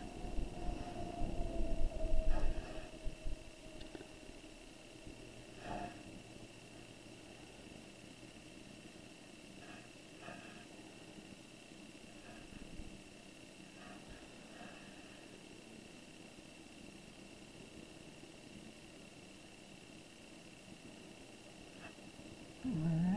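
Faint room noise with a steady high-pitched whine. Low rustling and handling noise fills the first few seconds, followed by a few soft, isolated taps.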